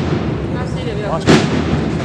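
Drum strikes from a large cornet and drum band, the loudest a single sharp hit about a second and a half in, over a steady background of noise and voices.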